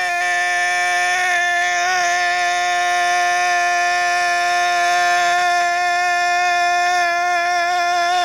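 A man's voice holding one long sung note through a microphone, loud and steady in pitch with only slight wavers, intoned as the 'key of money' in a prosperity affirmation.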